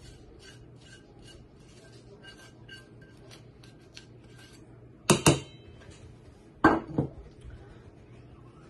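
Tongs scraping and clicking against a nonstick skillet as sautéed peppers and onions are worked out of it, with a faint ringing from the metal. Two pairs of loud knocks about five seconds in and near seven, each ringing briefly.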